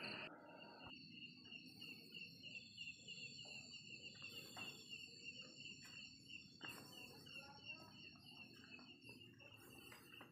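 Faint night-time chorus of insects: a high chirp repeating a few times a second over steadier high-pitched tones, with a few soft knocks here and there.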